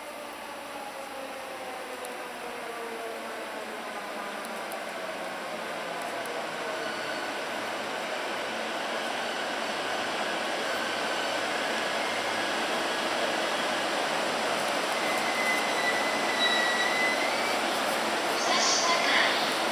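JR East E233-series electric commuter train pulling into a station platform and slowing to a stop, growing louder as it comes in. Its motor whine falls in pitch as it slows, and a high brake squeal sounds briefly near the end as it stops.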